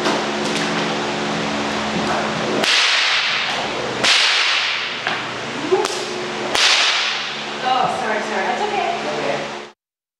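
A whip lashed three times at a person, each stroke a sharp crack with a long echoing tail, against a steady low hum. The sound cuts off just before the end.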